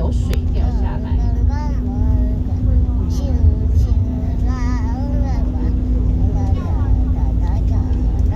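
A teacher leading a children's song, high voices singing with wavering held notes in short phrases, over a steady low engine drone from a vehicle.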